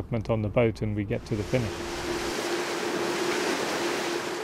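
A man's voice for the first second and a half, then the steady rush of wind and sea spray on board a racing trimaran driving fast through rough waves, with a faint steady hum under it.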